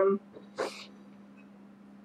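A woman's voice trails off on a hesitant "um", then a single short breathy sound, like an exhale, about half a second later. After that it is quiet, with a faint steady low hum.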